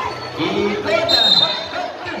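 A basketball bouncing as a player dribbles, the bounces heard among the voices and shouts of the crowd.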